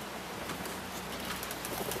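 A faint, low bird call near the end, over a steady background hiss.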